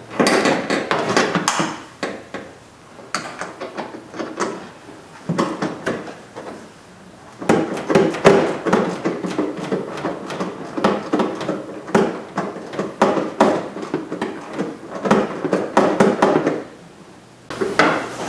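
Hands working at a car's plastic front bumper cover, fender and headlight area: irregular knocks, clicks and scraping. There is a busy spell at the start, sparser knocks for several seconds, then near-continuous handling noise from about halfway, which stops shortly before the end.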